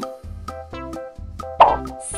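Light children's background music with a cartoon plop sound effect about one and a half seconds in.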